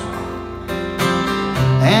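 Live acoustic guitars strumming a slow country song between sung lines, with two clear strums a little past the middle. Near the end, the singer's voice comes back in, sliding up into the next line.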